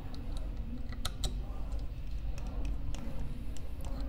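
Light, irregular metallic clicks and ticks of a hand screwdriver turning the screws that hold the bottom burr in a Turin DF83 coffee grinder's burr carrier, with a quick cluster of sharper clicks about a second in.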